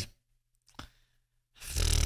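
The tail of a man's voiced sigh close to the microphone, then near quiet with one faint click. Near the end a breath into the microphone swells up.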